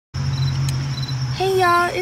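Crickets chirping steadily in high, thin tones over a low steady hum, starting abruptly just after the beginning. A woman's voice comes in about a second and a half in.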